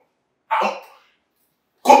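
A single short, throaty vocal sound from a man about half a second in, set between stretches of dead silence; speech starts again near the end.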